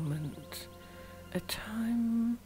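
A woman's soft voice in drawn-out, held tones and whispers over quiet background music. A falling tone ends just after the start, and a steady held tone comes near the end.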